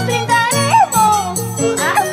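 Andean folk music from the song's recording: a harp-led ensemble with a high melody line that slides and bends between notes over a steady bass.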